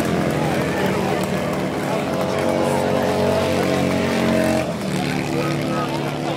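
Several Harley-Davidson XR1200 air-cooled V-twin race bikes held at high revs together during a burnout, a steady blended engine note that shifts lower about five seconds in.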